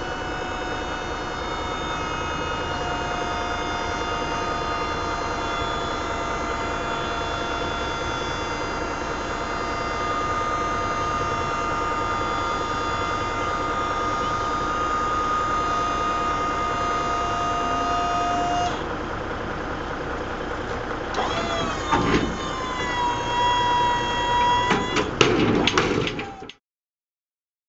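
A truck trailer's hydraulic lift gate cycling, its pump whining steadily for about nineteen seconds. The whine then changes and a knock comes about 22 seconds in, followed by more whining that slides in pitch and a few clunks near the end.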